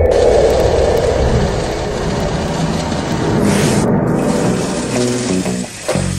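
Banknote counting machine running, a steady rushing, riffling noise as it counts a stack of notes, with a brief brighter surge about midway, over background music.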